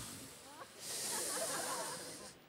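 Faint, airy hiss that dips briefly and swells again about a second in, with faint voices beneath it.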